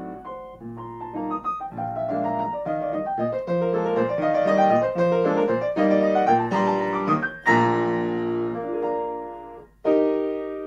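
Grand piano played solo, the closing bars of a waltz: running notes build to a loud chord about seven and a half seconds in that rings and fades away, then a short break and a new chord struck right at the end.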